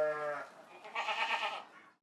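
Goat bleating, twice: a steady call that fades about half a second in, then a shorter wavering bleat about a second in.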